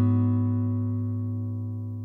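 Background music: an acoustic guitar chord, strummed just before, ringing on and slowly fading away.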